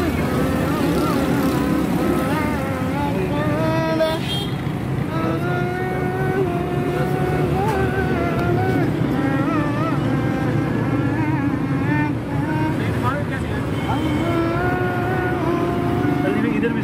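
A voice singing long, wavering held notes without clear words, over a steady low rumble.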